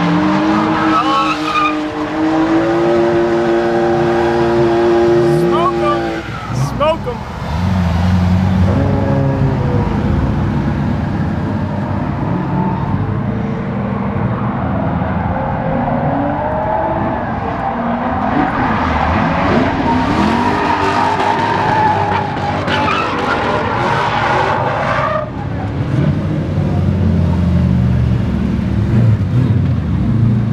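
Drift cars' engines revving hard and tyres squealing as the cars slide around the course, with one engine held at a steady high note for a few seconds early on.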